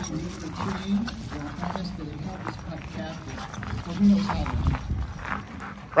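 Two young husky-type dogs playing together, with short, broken dog vocalisations, and people's voices in the background.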